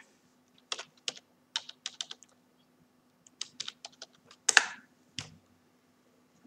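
Typing on a computer keyboard: two short runs of keystrokes, then a louder click about four and a half seconds in and a single tap after it.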